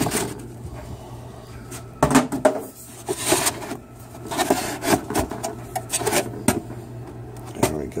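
Packaging being handled: the purifier unit and its molded pulp tray shifting inside a cardboard box, with irregular rubbing, scraping and a few light knocks.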